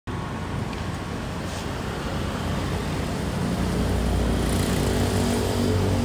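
Road traffic noise: a steady low engine rumble with a hum in it, growing a little louder in the second half.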